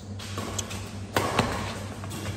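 Badminton racket hitting a shuttlecock in a singles rally: a sharp smack a little over a second in, followed quickly by a second one, with a lighter tick before them, over a steady low hum.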